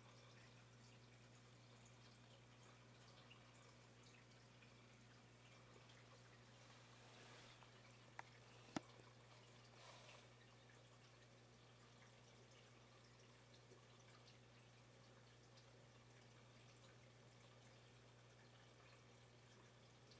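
Near silence: a running aquarium filter's faint steady hum with a faint trickle of water. There is a small click about eight seconds in and a sharper, louder click just after it.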